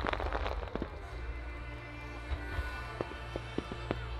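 Show music playing over loudspeakers with a steady deep bass, cut through by sharp firework bursts: a quick cluster of cracks in the first second, then a few single reports from about three seconds in.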